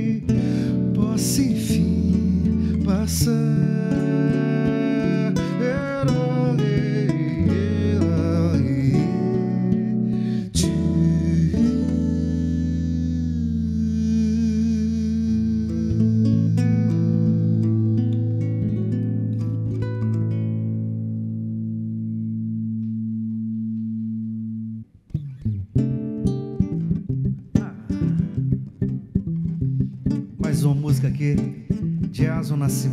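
Two acoustic guitars playing together, picking busy melodic lines. A final chord is then left ringing and slowly fades before it is cut off about 25 seconds in. Rhythmic guitar strumming starts up again shortly after.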